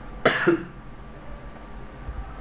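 A person coughs once, a short sharp burst about a quarter second in.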